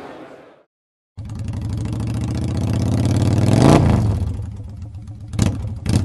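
An engine revving, starting just over a second in after a moment of silence: it runs steadily, climbs in pitch to a peak near the four-second mark, then drops back, followed by two sharp cracks near the end.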